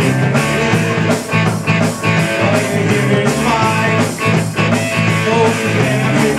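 Live rock band playing: electric guitars over a drum kit keeping a steady beat.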